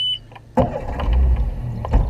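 A bass boat's outboard motor being started: a short electronic beep ends, then about half a second in the motor cranks and catches, settling into a low steady rumble.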